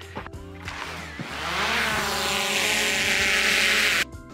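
Background music with a whooshing riser that builds over about three seconds and cuts off abruptly, a transition effect.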